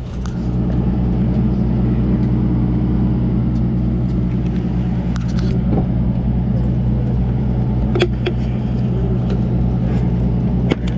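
A sportfishing boat's diesel engine running steadily, getting louder about half a second in. A few sharp clicks and knocks come through the middle and about eight seconds in.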